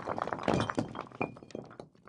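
Sound effect of breaking brick and scattering debris: a dense run of crashing knocks and clinks that thins out and fades away near the end.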